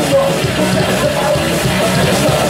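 Heavy metal band playing live at full volume: electric guitars, bass and drums, with a vocalist singing into a microphone.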